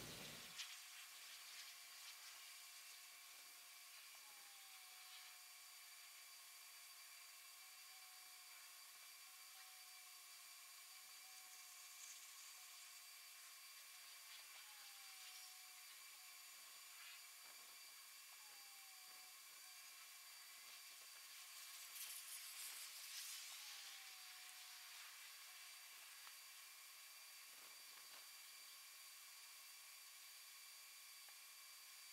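Near silence: a faint steady hiss with a faint repeating high whine, and a brief swell of noise about three-quarters of the way through.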